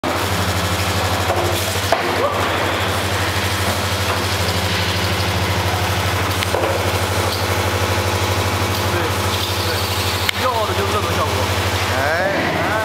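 Resistance seam welder welding a thin stainless steel tank seam: a steady low electrical buzz from the welding current as the copper wheel electrode rolls along the seam, with a couple of brief clicks.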